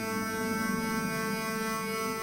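Live electronic music made from saxophone sound processed in real time: a steady, layered drone of held tones with no break.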